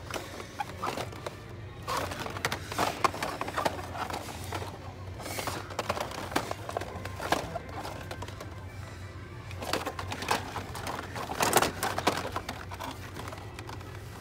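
Plastic blister-packed toy cars clacking and rustling as they are flipped through on metal peg hooks, with a cluster of louder knocks about three-quarters of the way in. Music plays in the background over a steady low hum.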